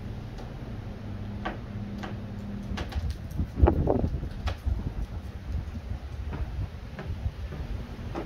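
Footsteps and shifting weight on a plywood bed slide in a pickup bed: scattered light clicks and knocks, with a louder knock and a brief creak about three and a half seconds in.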